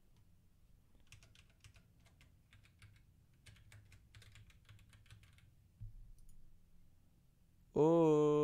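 Typing on a computer keyboard: a quick run of faint key clicks lasting about four seconds. A loud voice starts near the end.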